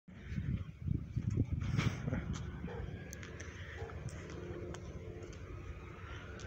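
Wind buffeting a phone's microphone, with irregular low gusts loudest in the first two seconds or so, then settling to a fainter steady rumble.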